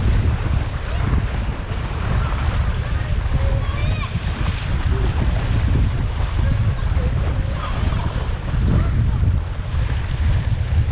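Wind buffeting the microphone over the rush and splash of water along a windsurf board's hull as it sails through chop, a steady loud roar with no break.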